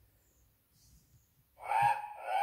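A recorded cockatoo screech, a harsh 'raaawk', played from the sound chip of a children's sound book. It starts near the end.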